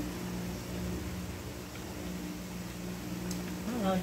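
A steady low mechanical hum over faint room noise, with a single light tick about three seconds in.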